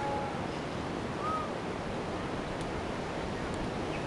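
Steady rushing wind noise on the microphone, with a couple of faint short whistled tones, one near the start and one a little over a second in.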